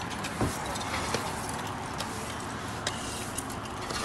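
Steady road and vehicle noise with a few faint knocks.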